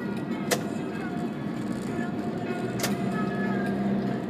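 Car interior road and engine noise of a taxi on the move, with radio talk and music playing in the cabin. Two sharp clicks come, one about half a second in and one nearly three seconds in.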